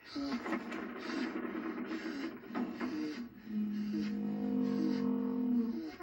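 Music with a steady beat playing through a 1987 GoldStar CRT television's speaker, with a long held low note in the second half.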